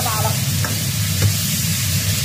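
Green beans sizzling in a hot steel wok while a spatula stirs them. The spatula scrapes, with two sharp taps against the wok.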